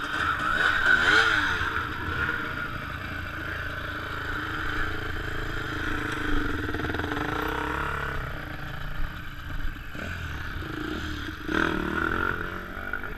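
Dirt bike engines running, with one revving up and down about six to eight seconds in.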